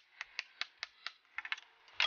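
Quick, light knocks, about five a second, from a hatchet striking a hockey stick held against a plywood leg, tapping the leg into its tight-fitting slot in a plywood base.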